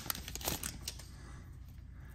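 Foil wrapper of a trading-card pack being pulled open and the cards slid out, with a few faint rustles in the first second and quieter handling after.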